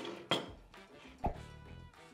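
Background music, with a sharp clink of a ceramic plate set down on a table about a third of a second in and a duller knock about a second later.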